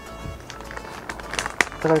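Background music, with a few sharp crinkles of a clear plastic bag being handled about a second and a half in.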